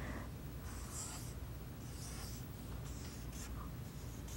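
Felt-tip marker writing on a paper flip chart: about four short, faint strokes, roughly one a second, as digits are written out.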